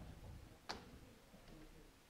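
Near silence: room tone with low hum, broken by one short click about two-thirds of a second in.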